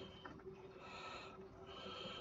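Faint breathing through the nose close to the microphone: soft in-and-out breaths about a second apart, some with a thin whistle. A steady low hum runs underneath.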